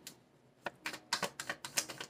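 A deck of tarot cards being shuffled by hand: a fast, uneven run of light card clicks, starting about half a second in.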